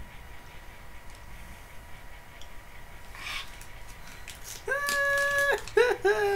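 A man's high, flat, held whine of about a second, then a short falling groan: a disgusted reaction to a gross-flavoured Beanboozled jelly bean. A breathy exhale comes a few seconds before.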